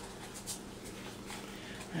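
Quiet room tone with a steady low hum and a few faint soft taps.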